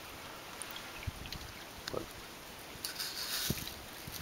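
Quiet outdoor background with a few soft, low handling thumps from a hand-held camera, and a short rustle of wind or movement about three seconds in.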